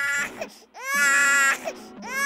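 Infant crying in wails: one cry trails off just after the start, then, after a brief catch of breath, a new wail sweeps up in pitch about a second in and holds for half a second before breaking off.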